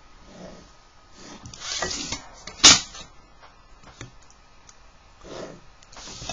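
Pencil drawing a line along a plastic set square on paper: a short scratchy stroke about a second and a half in, then a sharp tap, the loudest sound, shortly after.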